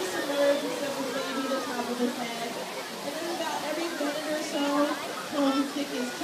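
People's voices and chatter over the steady rush of falling water from a pool waterfall.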